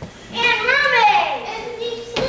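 A child's voice in one long drawn-out call, sliding up and then down in pitch before holding a steady note.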